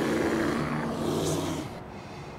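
A car's low, steady rumble with a few held low tones, fading out about three quarters of the way through.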